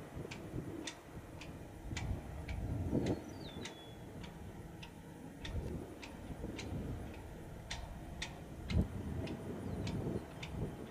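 Low rumble of the Boeing KC-135R Stratotanker's four CFM56 (F108) turbofans as it flies past overhead. A sharp tick repeats about twice a second, and a brief bird chirp comes a few seconds in.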